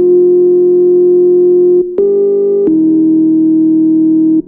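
Instrumental beat-tape music: long held synthesizer notes with no drums, the pitch stepping up slightly about two seconds in and dropping lower shortly after, each new note starting with a faint click.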